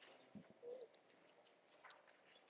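Near silence: room tone, with a soft low knock and a brief low tone, a quarter second long, about half a second in.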